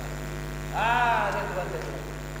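Steady electrical mains hum from amplifiers and PA gear that are switched on. About a second in there is a short, high-pitched call from a person that rises and then falls in pitch.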